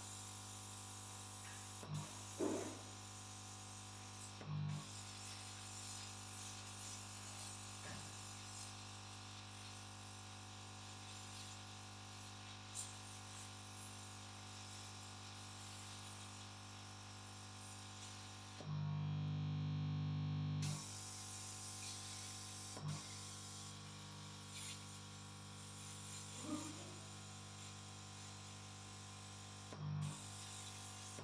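Air pump feeding a hose that blows air to dry EEG electrode glue on the scalp, running with a steady buzzing hum and a hiss of air. For about two seconds past the middle the hum turns louder and deeper, and a few small knocks come through.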